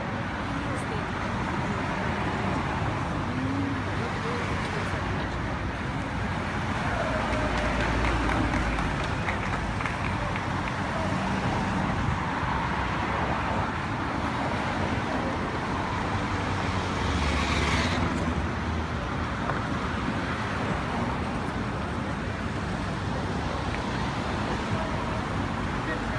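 Street traffic: cars driving steadily past on a city avenue, with the louder passes of nearby vehicles about 8 and 18 seconds in. Voices of passers-by can be heard faintly in the background.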